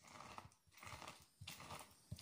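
A lemon half is twisted down on a red plastic hand citrus juicer, giving faint wet squelching and crunching in about three repeated twists.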